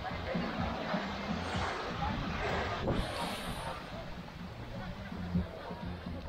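Beach ambience: small waves washing onto the sand and the babble of beachgoers' voices.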